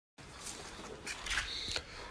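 A brief dead silence at an edit, then faint rustling and a few soft clicks and knocks of a handheld phone being moved about.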